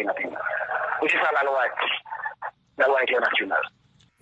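Speech heard over a telephone line, narrow and thin-sounding: a recorded phone voice message being played back.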